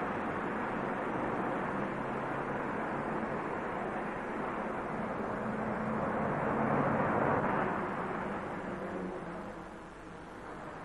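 City street traffic: a steady wash of engine and tyre noise from passing cars and buses, swelling about seven seconds in and then fading.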